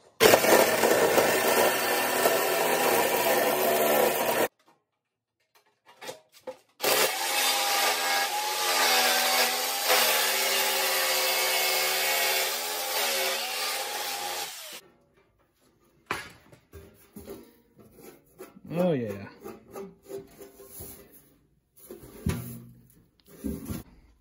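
Electric jigsaw cutting through the sheet-steel wall of an ammo can in two runs: a short burst of about four seconds, then after a brief pause a longer cut of about eight seconds in which the motor's whine sags and recovers under load. After it stops come quieter scattered knocks and clatter of handling.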